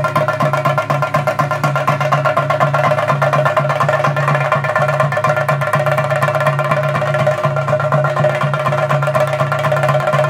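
Kerala chenda drums played with sticks in a fast, unbroken Theyyam rhythm, with a steady tone held underneath.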